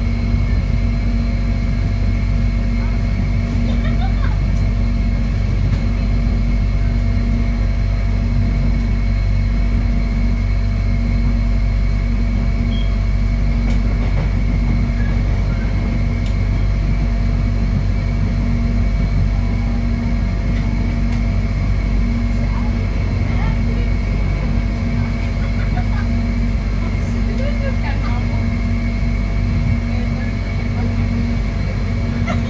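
Cabin sound of an electric airport train running at speed: a steady loud rumble of the wheels on the track, with a constant low hum and a thin high whine.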